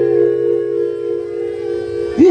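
A harmonium holding one sustained chord, several steady notes sounding together and fading slightly, with no drumming or singing over it.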